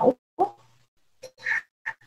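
A pause in a man's speech over a webinar link: the tail of a word, a short murmur, then a few brief faint clicks and mouth noises.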